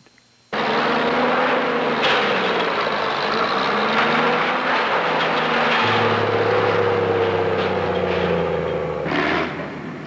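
Heavy construction machinery engines running, cutting in abruptly about half a second in: a loud, steady mechanical din whose engine tones rise and fall, with a deeper hum joining about six seconds in, easing off near the end.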